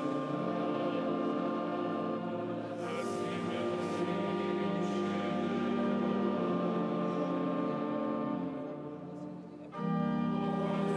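Choir and congregation singing liturgical chant in a large, echoing stone church, on long held notes. The singing falls away briefly just before the end and then comes back in.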